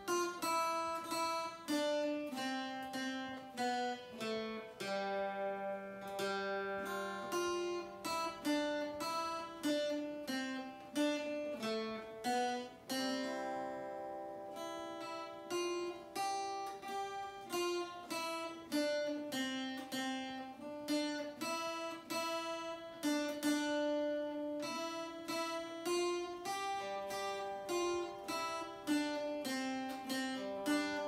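Two guitars, one of them acoustic, playing a Christmas medley together: a plucked melody over picked accompaniment, steady throughout with a few longer held notes about halfway through.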